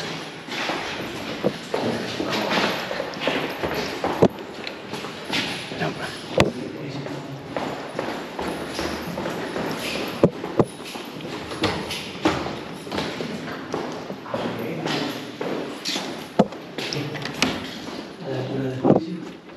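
Indistinct voices and footsteps on a hard floor, with about five sharp knocks or clicks spread through.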